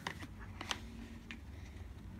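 Faint scattered clicks and light handling noises as cardboard poster packaging is worked open by hand.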